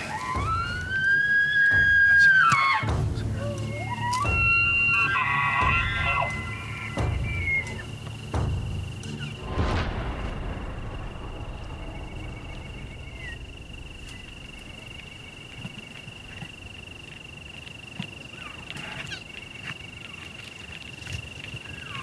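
Bull elk bugling: a high whistle that rises, holds for about two seconds and breaks off, followed about four seconds in by a second, more broken call. A thin steady high tone runs under the rest.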